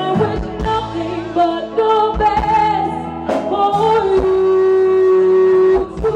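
Live band playing a slow pop ballad, with a woman singing lead over keyboard, bass guitar and drums. She holds one long, steady note near the end.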